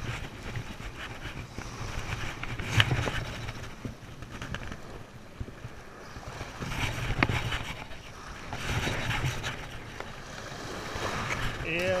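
Small surf waves washing in at the shoreline, with wind rumbling on the microphone in gusts and two sharp clicks, about three and seven seconds in.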